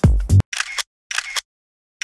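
Background music with a heavy bass beat cuts off abruptly about half a second in. Then come two short camera-shutter sound effects about half a second apart.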